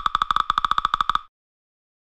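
Logo-animation sound effect: a rapid electronic pulsing beep on one high tone, about twelve pulses a second, that stops abruptly just over a second in.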